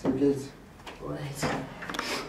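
A person's voice speaking in two short phrases, with a pause between them.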